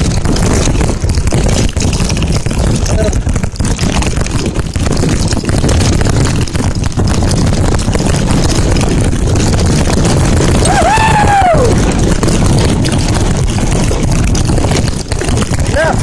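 Wind buffeting the microphone of a mountain bike's camera at downhill speed, with the tyres rolling and the bike rattling over a rough dirt and gravel track. About eleven seconds in, a brief high tone rises and then falls.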